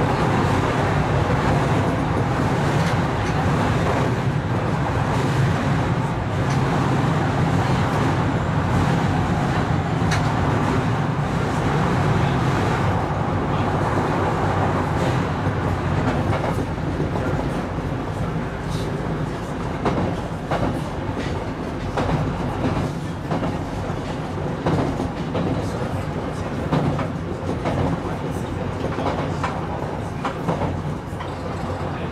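Electric train running, heard from inside the front of the car: a steady low rumble of wheels on rails. It is denser and louder while crossing a steel bridge in the first half, then eases off and is broken by frequent sharp clicks of the wheels over rail joints.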